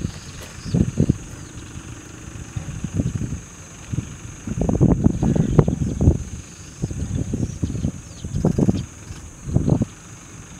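Wind buffeting the microphone in irregular low rumbling gusts, heaviest from about four and a half to six seconds in, over a steady high-pitched drone.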